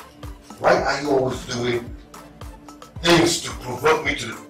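Dialogue over a film's background music: a voice speaks in two loud stretches, one early on and one near the end, while a soft steady music bed runs beneath.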